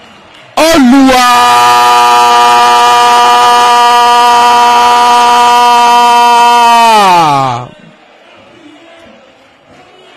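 A football commentator's long, loud goal shout on one held note. It rises at the start, holds for about six seconds, then falls away sharply and stops.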